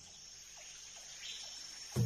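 Faint forest ambience: a steady, high-pitched chorus of crickets or similar insects.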